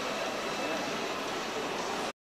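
Steady background noise of a large indoor showroom: an even hum with faint, indistinct voices in it.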